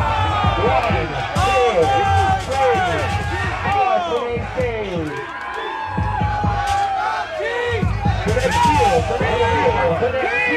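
DJ-played ballroom beat with a heavy bass under a crowd shouting and cheering. The bass drops out about four seconds in and comes back about two seconds later, while the crowd's yells carry on over it.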